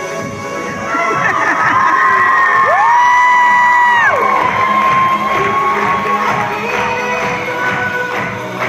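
A crowd of schoolchildren cheering and shouting over dance music, getting louder about a second in, with one long high cry rising in and held for about a second and a half near the middle.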